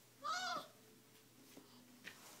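A baby's short, high-pitched vocal squeal that rises and falls in pitch, about half a second long, near the start; faint small taps follow.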